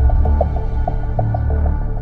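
Dramatic background score: a low, throbbing drone that swells and eases, with short repeated higher notes over it, opening with a sudden hit.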